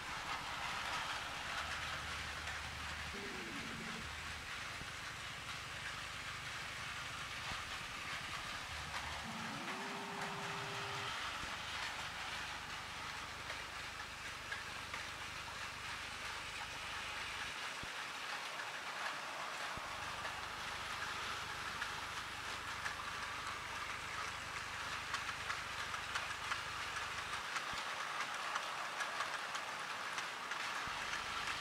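Battery-powered TOMY Plarail toy trains running on plastic track: a steady whirr of small motors with the wheels clattering over the track, the clicking growing more distinct near the end.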